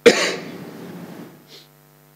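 A man coughs into a table microphone: one sudden, loud burst that trails off over about a second, over a steady electrical mains hum.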